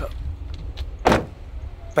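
An SUV door being shut once, a single sharp thud about a second in.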